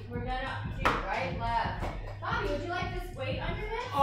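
Voices talking indistinctly over a steady low hum, with one sharp knock about a second in.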